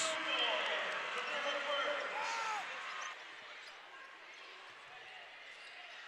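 Basketball arena crowd and court noise, loudest at the start and dying away over the first three seconds or so, the crowd's reaction to a made long three-pointer.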